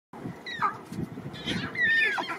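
Lion cubs mewing: high-pitched calls that slide down in pitch, a short one about half a second in and a longer one near the end.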